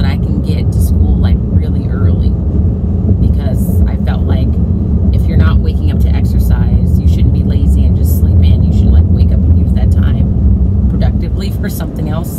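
Steady low rumble of road and engine noise inside a moving car's cabin, with short bits of a woman's voice over it now and then.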